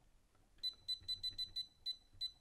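Control panel of a Whirlpool combi microwave oven beeping as it is set to 750 W for one minute: a quick run of short, high beeps, several a second, starting about half a second in.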